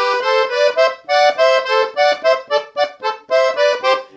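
Leticce piano accordion playing a quick melodic phrase in parallel thirds, two notes sounding together, as a run of about ten short detached notes.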